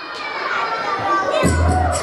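Audience cheering and children shouting, then about one and a half seconds in a bass-heavy dance track starts with a regular beat.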